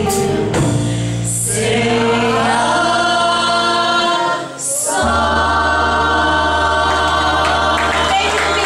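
Live pop band playing, with a woman's lead vocal and men's harmony vocals over keyboard, guitar and drums. After a brief break about four and a half seconds in, the band and singers hold one long final chord.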